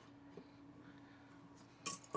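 A quiet stretch with a faint steady hum, then near the end a sharp clatter as the hard plastic Put and Take top is given a light spin on the tabletop.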